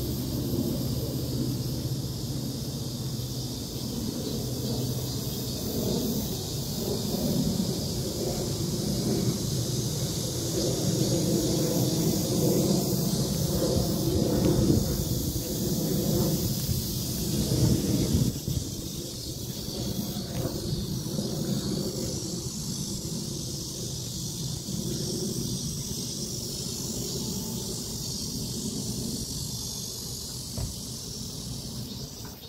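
Wind buffeting a phone's microphone in uneven gusts, strongest through the middle and dropping off suddenly a little past halfway, over a steady high hiss.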